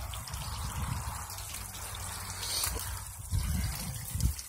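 Water trickling and splashing as thin streams fall from the sluice box's header onto the riffles, running at low water pressure, with a low rumble underneath.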